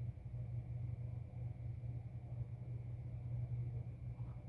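Quiet room tone with a steady low hum and no distinct sounds.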